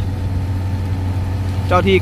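Fire truck engine running steadily with a constant low hum.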